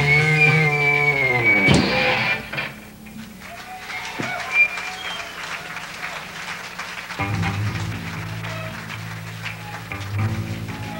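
Live post-hardcore band with electric guitars: a loud ringing guitar chord slides down in pitch and drops away about two seconds in, leaving quieter sparse guitar over a low steady tone, until the low end comes back in fuller about seven seconds in.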